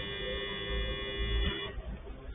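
A steady buzzing tone held for under two seconds, cutting off near the end.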